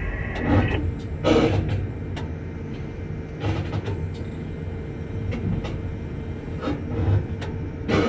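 Steady low drone of tower crane machinery heard inside the operator's cab while the crane moves a concrete bucket, with a constant faint hum over it. A few short, louder sounds break in about half a second and a second and a half in.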